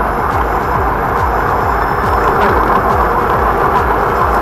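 Loud, steady rushing noise of wind and road on a body camera's microphone while riding an electric unicycle, with music mixed in.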